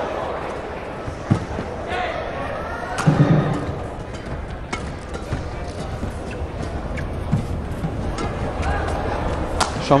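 Badminton rally: sharp racket strikes on the shuttlecock about every second or so, over the steady noise of a large arena crowd.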